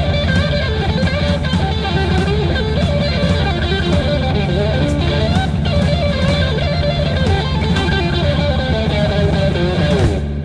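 Electric guitar solo in a heavy blues-rock song: a winding single-note lead line over held bass notes, steady and loud.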